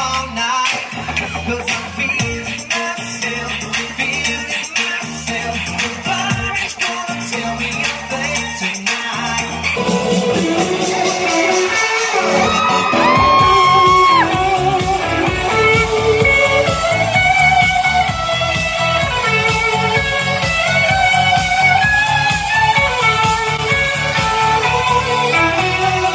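Live band music: electric guitar played over a bass and drum beat. About ten seconds in, the music gets fuller and louder, with sliding notes.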